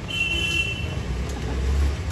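Two-wheeler engines idling and street traffic with a steady low rumble that swells toward the end, and a short high-pitched beep lasting under a second near the start.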